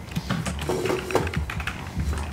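Computer keyboard being typed on: quick, irregular key clicks over a steady low hum.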